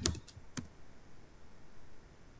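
A few quick, light clicks at a laptop computer in the first half second, then only faint room noise.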